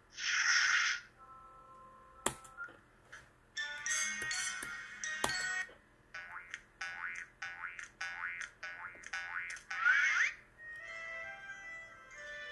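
DVD menu music and transition sound effects from a TV. A short whooshing burst opens, then tinkly music with a couple of sharp clicks. A run of short springy notes that bend upward follows, capped by a quick rising glide about ten seconds in, before a steadier menu music loop starts.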